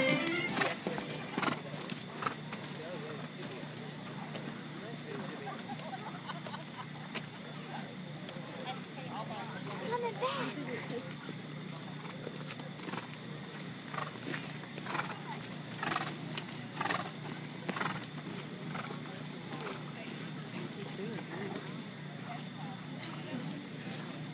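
Organ music breaks off right at the start. Then come scattered hoofbeats of Tennessee Walking Horses on the dirt show ring, with faint crowd chatter behind.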